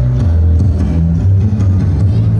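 Recorded dance song with a heavy bass line and a steady beat, played loud.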